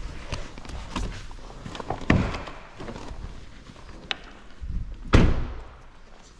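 A car door of a Volkswagen Golf GTI TCR being worked: small clicks and a thunk about two seconds in, then the door shut with a heavy slam about five seconds in, with footsteps between.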